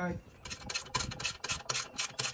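Socket ratchet wrench clicking in a quick even run, about six clicks a second, starting about half a second in, as a bolt is tightened with the ratchet swung back and forth.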